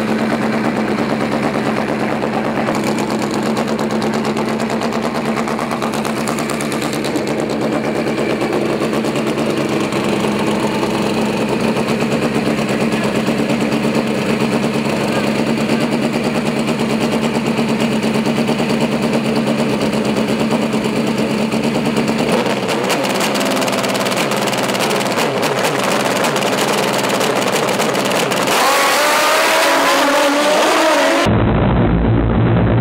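Drag-racing motorcycle engines running loudly and steadily at the start line, then revving up in rising sweeps near the end as the bikes launch.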